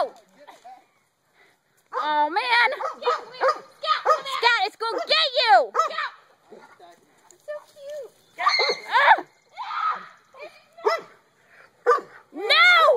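Dogs barking at a cornered skunk in repeated short, high-pitched barks, mixed with excited human shouting. The barking starts about two seconds in, with a run of barks, a pause, and more near the end.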